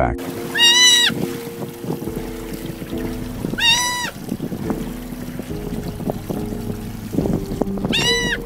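A mother sea otter screaming: three loud, high-pitched calls about half a second each, roughly three seconds apart, the last near the end, as she calls for her lost pup. Background music plays underneath.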